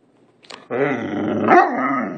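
Great Dane puppy "talking": a short sound about half a second in, then one long, low, drawn-out vocalization of about a second and a half, made in play rather than in aggression.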